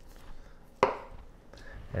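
Kitchen knife slicing raw chicken breast on a plastic cutting board, with one sharp tap of the blade on the board a little under a second in.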